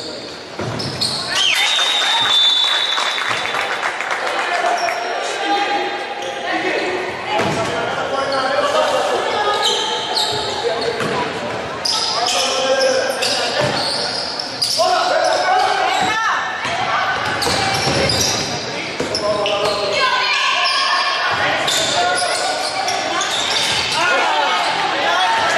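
Live basketball game sounds in an echoing gym: a basketball bouncing on the wooden court, with players and bench calling out throughout and scattered sharp knocks and squeaks.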